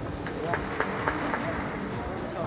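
Reverberant arena ambience with a steady hum and a quick run of sharp clicks or knocks, about four a quarter second apart, during a high bar routine.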